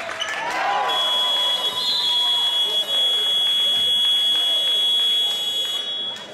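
Gym scoreboard buzzer sounding one long, steady, high-pitched electronic tone for about five seconds, starting about a second in, to stop play.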